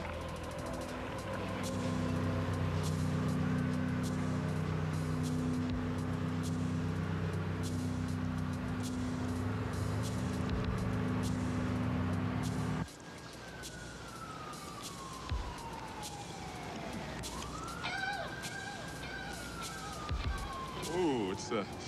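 A low steady drone of held tones that cuts off suddenly about two-thirds of the way in. After it, a siren wails, falling slowly in pitch, then rising and falling again near the end.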